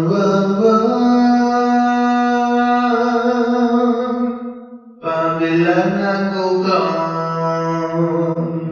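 A solo lead vocal recording: a singer holds two long notes of about four seconds each, with a short break between them, the first sliding slightly up at its start. The voice is played back through the Focusrite FAST Verb reverb plugin at a fully wet mix, so each note trails off into reverb.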